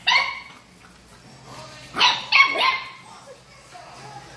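Small dogs barking while they play: one sharp bark right at the start, then a quick run of three or four barks about two seconds in.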